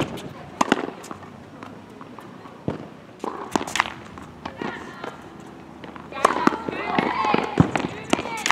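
Tennis ball hits on a hard court: sharp pops of the ball coming off racket strings and bouncing, several at irregular spacing. Voices talk in the background, loudest in the last two seconds.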